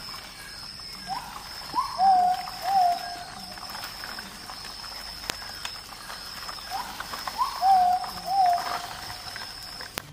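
An animal calling: two phrases of four short hooting notes, the first two rising and the last two lower, about five and a half seconds apart, over a steady high-pitched whine.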